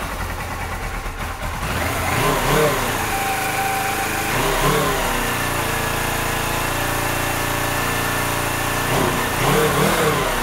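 2007 Suzuki GS500F's air-cooled parallel-twin engine idling while still a little cold, blipped three times with the throttle, about two, five and nine seconds in, each rev rising and falling back to idle.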